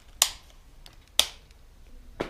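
Two sharp snaps about a second apart from a bicycle rim brake being worked during a brake test; its brake cable is completely rusted and needs replacing.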